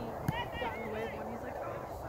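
Faint, distant voices of players and spectators talking and calling across a soccer field, with a single sharp knock about a quarter second in.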